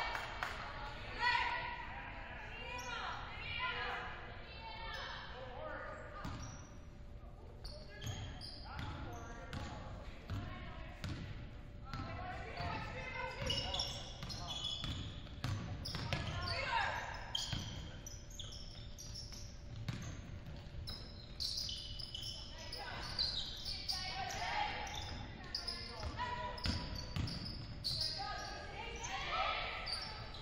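A basketball bouncing on a hardwood gym court during live play, with many scattered knocks, amid players' and coaches' distant voices calling out in a large hall.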